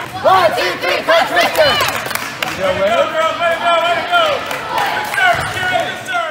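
A group of girls shouting a team cheer together, many high voices overlapping.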